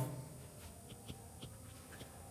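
A few faint, short ticks of a stylus writing on a tablet screen, over quiet room tone.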